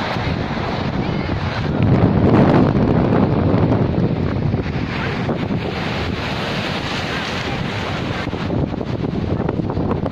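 Wind buffeting the phone's microphone over the steady rush of rough surf breaking on a pebble beach, swelling louder about two seconds in.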